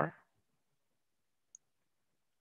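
Near silence after a spoken word trails off, broken by one faint, very short click about a second and a half in.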